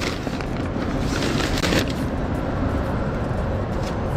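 Paper grocery bags rustling and crinkling as they are handled and set down in a car's cargo area. The crackling is densest a little over a second in, over a low steady rumble.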